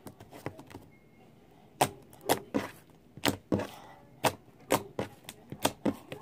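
Hands pressing and poking a blob of slime on a table, making a run of sharp clicks and pops, about two to three a second from about two seconds in, after a few faint clicks.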